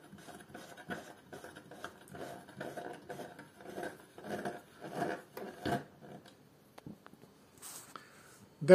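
Front infeed plate of an Einhell TC-SP 204 planer being lowered towards 3 mm cutting depth, giving faint, irregular metal clicks, rattles and scrapes. These come from the play, or 'wiggle', in the plate's adjusting mechanism, and they thin out after about six seconds.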